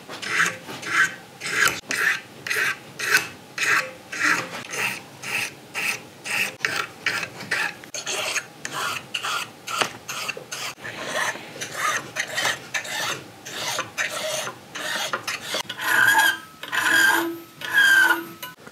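Hand file rasping back and forth across a cast brass trigger guard clamped in a vise, in quick even strokes of about three a second. The strokes are filing off the casting's mold marks and flashing.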